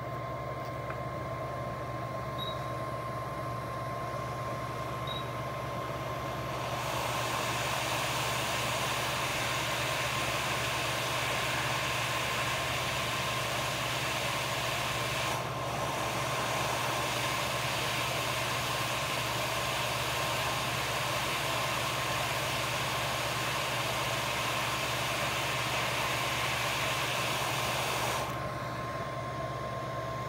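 Hot-air rework station blowing a steady hiss of hot air for about twenty seconds, switching on about seven seconds in and cutting off near the end, while a small IC is heated to be lifted off a phone logic board. Under it runs a steady workbench hum with a thin high tone.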